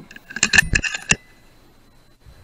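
Quick cluster of metallic clicks and clacks with a short ring, about half a second in and lasting under a second: the action of an FX Dreamline .177 PCP air rifle being cycled to chamber the next pellet after a shot.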